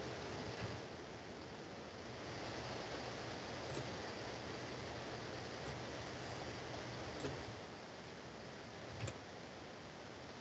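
Low, steady hiss of room tone with a few faint, short clicks, one a little after seven seconds in and one near nine seconds.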